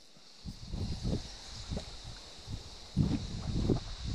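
Soft, irregular low bumps and rustles from an angler wading and handling a fly rod while playing a small trout, over a steady high hiss of riverside ambience.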